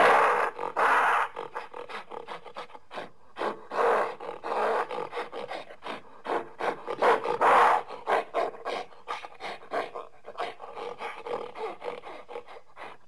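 Growls and roars made for a fictional monster, in three loud bursts: at the start, about four seconds in, and about seven seconds in. Quieter short clicks and scraping sounds fill the gaps.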